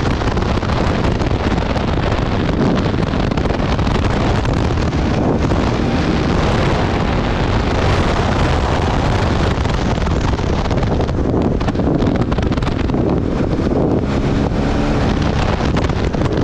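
Honda CRF450RL's single-cylinder four-stroke engine running at speed, heavily mixed with steady wind noise on the microphone.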